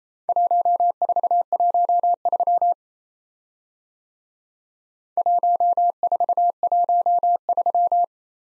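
Morse code sidetone at a single steady pitch sending a four-character group, the numbers 1, 4, 1, 3, twice: once from just after the start to almost three seconds in, then again from about five seconds in, a little slower the second time.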